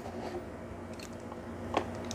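Small handling clicks as a 1911 pistol is lowered onto the plastic platform of a digital kitchen scale, with one short knock near the end as it comes to rest.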